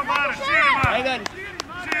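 High voices calling out across a football pitch, with a sharp thump a little under a second in, like a ball being kicked.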